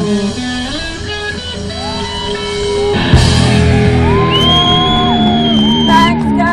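Live rock band playing amplified, with electric guitar to the fore over drums and bass. About three seconds in a cymbal crash lifts the music louder, and long held notes bend in pitch through the second half.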